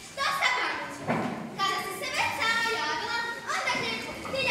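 Children's voices talking in a large hall.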